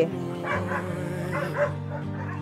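Dogs barking and yipping in short calls, several in the first second and a half, over background music with sustained low notes.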